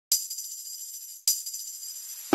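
Opening of a reggae track: two strokes of jingling percussion about a second apart, each ringing on high and fading, with no bass or other instruments yet.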